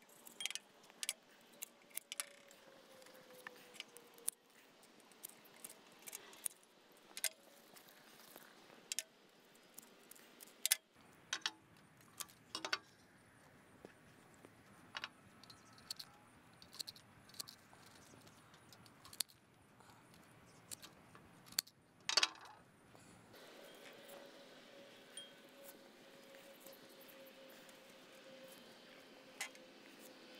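Floral pruners snipping aster stems into smaller sprigs: irregular sharp clicks, a few seconds apart, against a quiet background.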